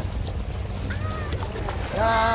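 Wind rumbling on the microphone over the sea's wash, with a few faint clicks and a short vocal sound about a second in.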